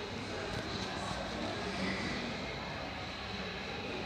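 Steady background noise with faint, indistinct voices.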